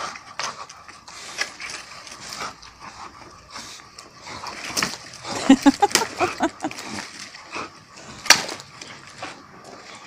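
A dog worrying a leafless branch: twigs rustling and scraping on the ground, with short low noises from the dog about halfway through and one sharp crack about eight seconds in.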